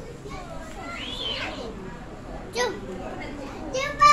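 Young children's voices at play: scattered chatter, with a high rising-and-falling squeal about a second in. A loud high-pitched child's shout begins right at the end.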